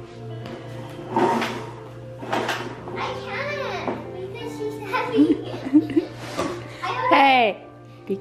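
Children's voices calling out in play, without clear words, loudest in a long rising-and-falling call about seven seconds in, over steady background music.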